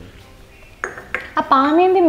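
Miniature toy kitchen pots and utensils clinking as they are handled, a few light clinks about a second in.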